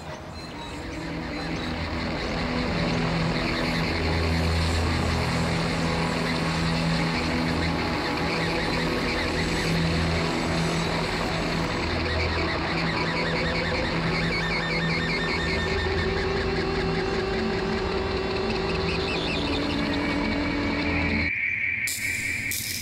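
Dramatic background music: sustained chords over a slowly shifting bass line. It swells in over the first couple of seconds and cuts off abruptly just before the end.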